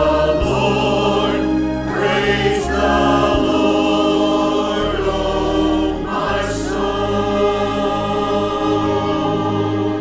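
Church choir singing in parts over instrumental accompaniment with low, sustained bass notes.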